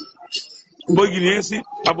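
Knife and fork clinking on a china plate, with a brief ringing ding near the start, then a man's voice speaking for most of the rest.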